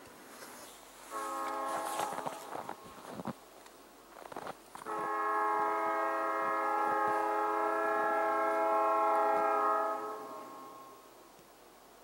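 A locomotive's Nathan P3 air horn blaring for a grade crossing: a blast of about two seconds, then after a short gap a long blast of about five seconds that fades away near the end.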